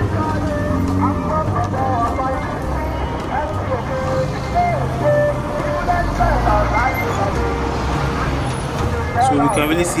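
Busy roadside traffic: car engines running and idling at a junction, with a heavy dump truck's engine passing close, loudest about six seconds in.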